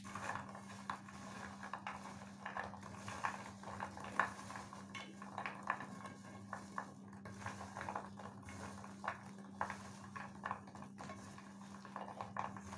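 Hands tossing small baked cookies in a glazed clay dish to coat them in apricot jam and glaze. The cookies knock against each other and against the dish in irregular light clicks, over a steady low hum.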